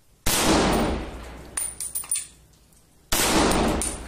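Two rifle shots from a scoped rifle, about three seconds apart, each followed by a long echo off the surrounding walls. A few light metallic clinks come between them.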